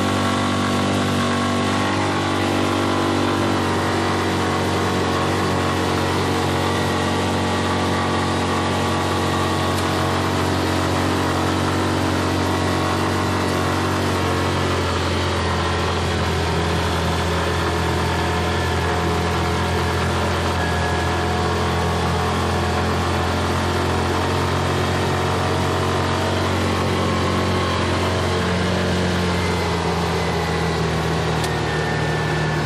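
Yamaha Rhino 450 UTV's single-cylinder four-stroke engine running steadily while driving, heard from inside the open cab with road and wind noise. The engine note shifts about halfway through.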